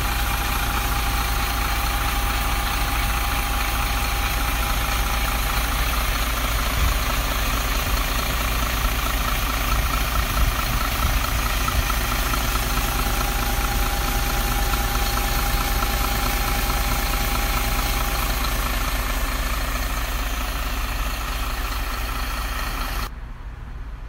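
Volvo B8R coach's rear-mounted 7.7-litre six-cylinder diesel idling steadily, heard up close at the open engine bay, with a faint steady whine that comes and goes over it. The engine sound cuts off about a second before the end.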